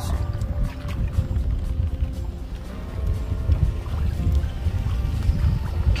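Wind rumbling on a phone microphone in a small boat being poled across a lake, with faint music underneath.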